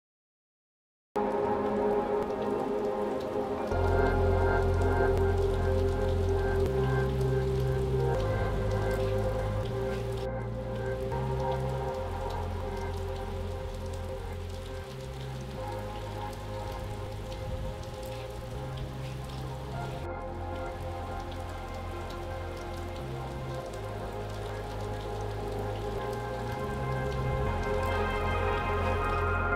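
Steady rain falling, under soft ambient music whose low bass notes change every second or two beneath held chords. It begins abruptly about a second in after silence.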